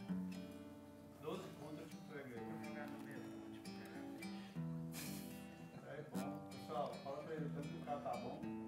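Acoustic guitar strummed softly, chords struck every second or two and left to ring.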